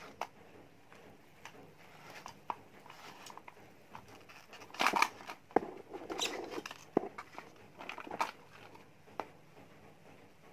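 Plastic telephone housing and its internal parts being handled during disassembly: scattered clicks, light scrapes and plastic rattles. The loudest is a scraping rattle about five seconds in, followed by a sharp click near seven seconds.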